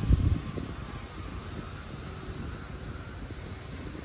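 Wind buffeting an outdoor microphone over a steady low background rumble. A stronger gust in the first half second gives way to a lower, even rumble.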